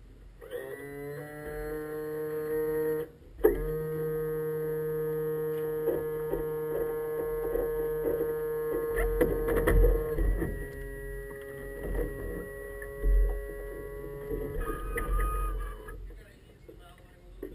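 A steady machine-like hum that climbs to pitch within the first second, cuts out briefly about three seconds in, drops slightly in pitch about ten seconds in, and stops near the end. A few knocks sound over it in the second half.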